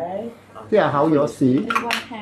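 A man talking, with two or three sharp clinks near the end.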